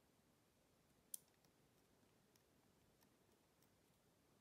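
Faint clicks of Lego plastic parts being handled and moved on a small model, one sharper click about a second in and a couple of softer ticks later, over near silence.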